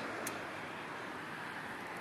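Steady low background hiss with a single short click about a quarter of a second in.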